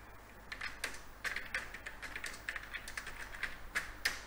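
Computer keyboard typing: a run of quick, irregular keystrokes that starts about half a second in.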